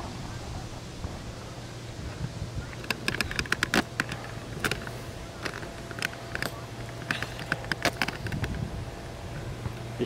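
Empty metal hex (trap) bar clicking and rattling in irregular clusters of sharp clinks as it is lifted and lowered, over a steady low hum.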